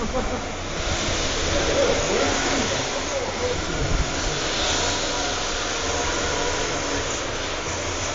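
Radio-controlled 2WD drift cars running in a chase on a smooth indoor track, a steady even noise from their motors and sliding tyres, with indistinct voices in the background.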